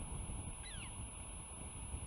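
A bird gives one short call that slides down in pitch, about half a second in, over a steady low rumbling background.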